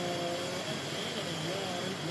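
Play-by-play announcer's voice over a steady background of noise and hiss. It opens with one drawn-out word and then breaks into broken speech.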